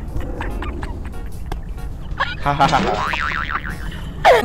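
A cartoon 'boing' spring sound effect with a fast wobbling pitch in the second half, over background music, with a woman laughing.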